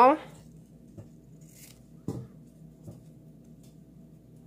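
A few faint clicks and taps from handling scissors and satin ribbon on a table, the loudest about two seconds in.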